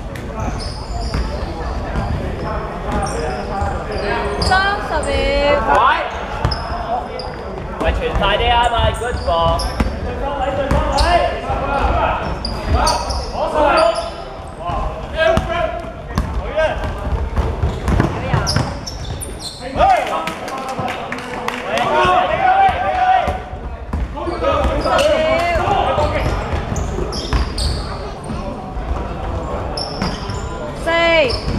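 Basketball bouncing on a hardwood sports-hall floor during play, mixed with players' shouts and running steps, all echoing in the large hall.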